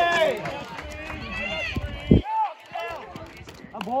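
Several people yelling and cheering encouragement from a baseball dugout as a runner goes round the bases, with shouts like "come on" and "hey, hey, hey" near the end. A loud low thump about two seconds in.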